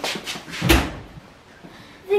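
Drop-down oven door of a range cooker being pushed shut, closing with a single thud a little under a second in.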